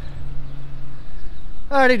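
Low rumbling noise with a steady low hum under it, then a man starts talking near the end.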